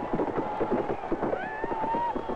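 Horses galloping on a dirt rodeo arena floor: a rapid, irregular patter of hoofbeats, with a wavering high tone sliding over them in the second half.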